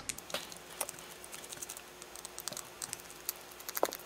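Small screwdriver turning a tiny screw out of a circuit board: scattered light clicks and scrapes of metal on metal, more of them near the end, with one sharper click just before it ends.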